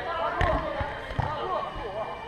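Indistinct voices talking, with several short, dull low thumps, the sharpest about half a second in.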